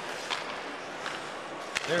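Hockey arena during live play: a steady crowd murmur with a few sharp clacks of sticks on the puck, the last about two seconds in.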